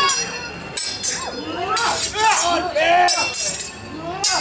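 Metal swords clashing in a staged sword fight, several ringing clinks about a second apart, with voices shouting over them.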